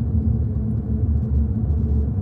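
Steady low rumble of a moving car heard from inside the cabin: road and engine noise.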